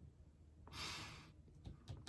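A man's short breathy exhale, a soft sigh, about a second in, followed by a few faint light taps near the end.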